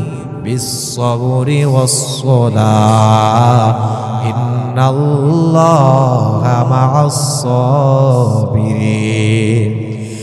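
A man's voice chanting a religious verse in a slow melodic tune, in several long phrases of held, wavering notes.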